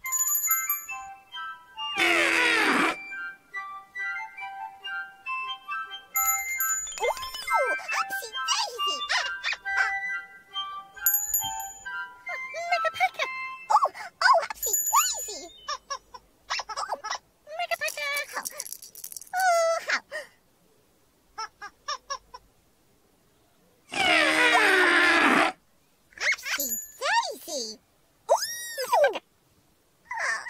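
Children's TV soundtrack: tinkly music with character vocalisations and gliding cartoon sound effects. Two loud, brief noisy blasts stand out, one about two seconds in and a longer one near the end.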